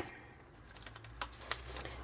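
Light, scattered clicks of long fingernails and glossy paper as a catalogue's pages are handled and turned, about six small ticks in the second half.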